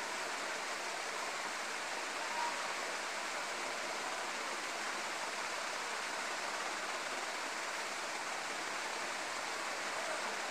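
Steady hiss of background noise, even and unchanging.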